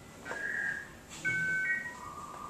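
Dial-up modem connection tones: a steady high beep, then two tones sounding together about a second in.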